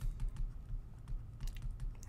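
Soft, irregular clicks and taps from handwriting a word on a computer's digital whiteboard, the input device knocking lightly on the desk as the strokes are made.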